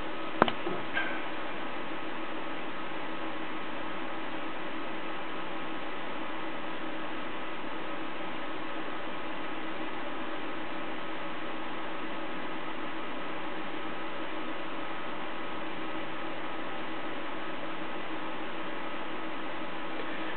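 A laptop running: a steady hum and hiss with several constant faint tones, the sound of its cooling fan and spinning hard drive. A single short click comes about half a second in.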